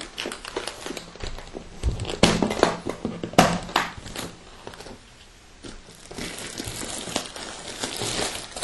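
Aluminium hard carrying case handled on a table: a few sharp knocks and clicks as it is turned and opened, then plastic wrapping crinkling over the last couple of seconds as an item is lifted out.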